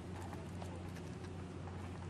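Faint scattered clicks and rustling of leaves and twigs brushing against a handheld phone as it is moved through undergrowth, over a steady low hum.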